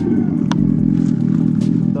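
Artificial motorcycle engine sound played through the Revolt RV400 electric bike's speaker: one steady droning note held for about two seconds, with a short click about half a second in.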